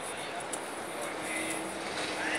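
Steady city background noise, a continuous hiss and rumble, with a faint steady hum coming in about halfway through and faint voices in the background.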